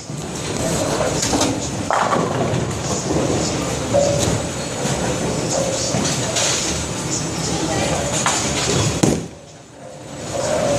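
Busy bowling-alley ambience: crowd chatter and background music over rolling balls, with sharper clatters about two and four seconds in and again near the end.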